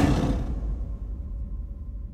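The fading tail of a deep soundtrack hit: a low rumble dies away steadily, with a faint held tone lingering over it.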